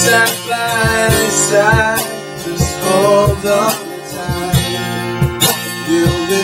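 Acoustic band playing: a strummed acoustic guitar over a steady cajon beat, with a sung vocal line that bends between notes.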